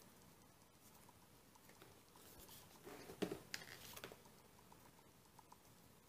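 Faint rustling and soft taps of cardstock photo mats and paper pages being handled and turned in a handmade photo booklet, with a short burst of sharper clicks and rustles about three seconds in.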